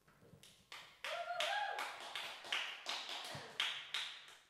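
Irregular sharp taps, about three a second, with a brief wavering tone about a second in.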